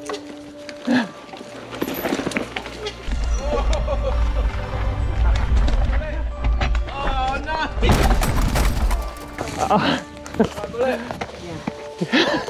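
Background music over a mountain bike ride on a woodland trail, with laughing and short calls. About eight seconds in comes a loud clattering rattle: a rider and his mountain bike going down after failing to ride over a wall.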